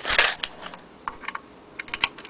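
Handling of small metal sewing-machine attachments and their cardboard boxes: a brief scraping rustle at the start, then a few sharp light clicks and clinks.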